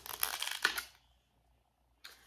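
Thin plastic wax-melt clamshell being handled and opened, with crinkling and clicking of the plastic that stops just under a second in.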